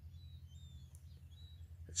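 Faint bird calls, a few short thin chirps and whistles, over a steady low hum.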